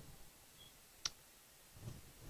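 A pause with near silence and room tone, broken by one short sharp click about a second in.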